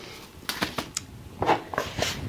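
Paper seed packets and a small clear plastic seed container being handled on a table: a few light rustles and clicks.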